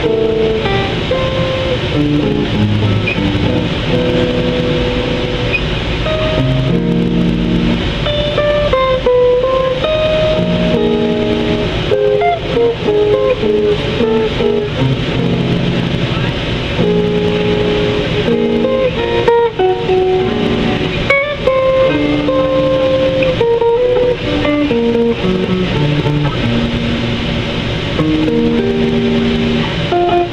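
Archtop electric guitar played through a small amplifier: a single-note melody mixed with chords, the notes moving continuously without a pause.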